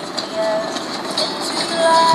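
An animated film's soundtrack of sound effects and music, played back through the Acer W510 tablet's small built-in speakers: a busy noisy mix with a few short held notes.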